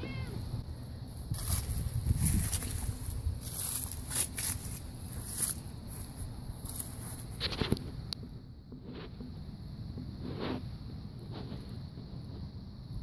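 Scattered short rustles and crunches of dry leaves and grass underfoot as the cat and the person filming walk across the lawn, over a steady low rumble of wind on the microphone.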